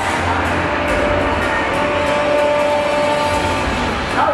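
Loud music with a steady beat, with two held notes through the middle.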